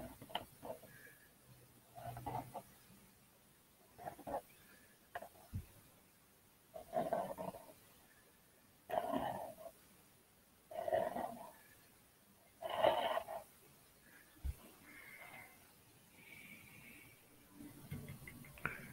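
Palette knife scraping paint off a stretched canvas in about seven separate strokes, roughly one every two seconds, each under a second long. Two faint knocks fall between the strokes.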